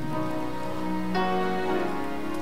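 Soft sustained chords on a keyboard, held steadily and changing to a new chord about a second in.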